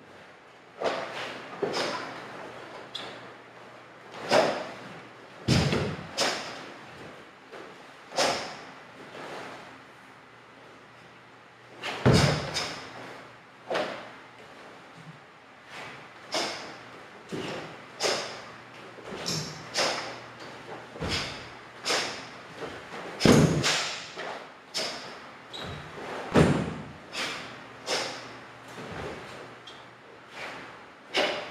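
Karate kata performed barefoot on a wooden dojo floor: a steady run of sharp snaps from the cotton gi and strikes, with several heavier foot stamps thudding into the boards, echoing in the hall.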